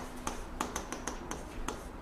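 Chalk writing on a chalkboard: a quick, irregular series of light taps and short scrapes as the chalk strikes and drags across the board to form characters.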